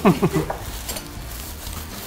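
A short burst of laughter at the start, then the rustle of plastic takeaway bags and paper wrapping being opened, with light clatter of food containers on the table.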